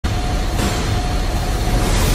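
Fire whoosh sound effect over an animated intro: a loud, steady rushing rumble that starts abruptly and brightens about half a second in.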